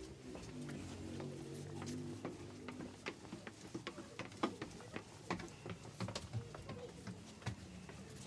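Footsteps knocking on steep wooden stairs, irregular knocks several times a second, with a low murmur of voices in the first few seconds.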